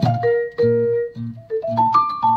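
Jazz duo of guitar and vibraphone playing: ringing vibraphone notes over short low notes that fall about twice a second.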